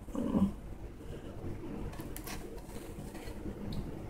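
Rotary cutter's round blade rolling through shirt fabric on a table, a faint steady sound, after a brief hummed voice at the start.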